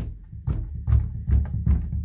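Wooden sliding closet door pushed by hand, thumping and rattling about four times against its newly fitted bottom guide, which stops it from swinging off its track.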